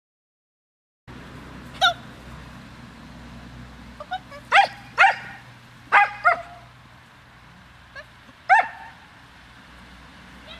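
Small dog barking in sharp, high-pitched barks: about six loud ones from about two seconds in, with a few quieter ones between. This is the barking during agility work that the handler is trying to train away.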